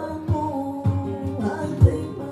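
Live flamenco music: a woman singing with two acoustic flamenco guitars plucking and strumming beneath her. The guitar strokes come about every half second, with the strongest one near the end.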